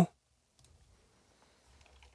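Faint computer mouse clicks over near-silent room tone.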